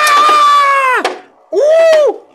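A man's drawn-out shout at the launch, held for about a second with slowly falling pitch and cut off sharply. After a short pause comes a shorter cry that rises and falls.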